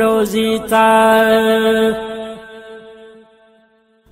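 Unaccompanied Pashto naat singing: a solo voice finishes a phrase and holds one long note, which fades out slowly into near silence over the last couple of seconds.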